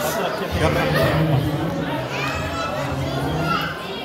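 A man speaking through a microphone and loudspeaker in a large, echoing hall, with chatter from the guests behind.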